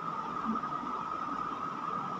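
Room tone: a steady hiss with a constant mid-high hum and no distinct events.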